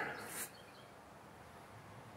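Near silence: faint outdoor background, after a short high hiss in the first half second.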